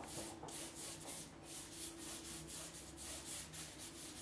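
Large flat hake brush swishing over watercolour paper in quick back-and-forth strokes, about four a second, spreading clear water across the sheet to wet it before painting.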